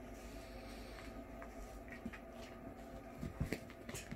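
Quiet room with a steady low hum. Near the end come a few soft knocks and thumps as a cat bats a catnip toy across a rug.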